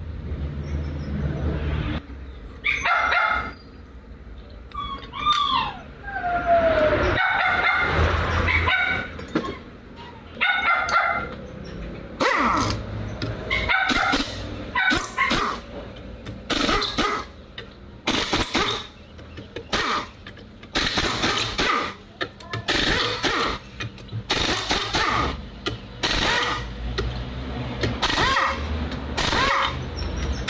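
A dog barking repeatedly, with many short loud bursts coming about every half second to second through the second half, mixed with short bursts from a pneumatic impact wrench working the transmission case bolts over a steady low hum.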